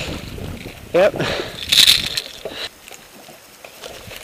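A hooked fish thrashing and splashing at the water's surface beside the boat, with one short loud splash just under two seconds in.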